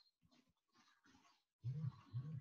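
Near silence, then near the end a man's voice making two short low sounds, each rising and falling in pitch, just below speech level.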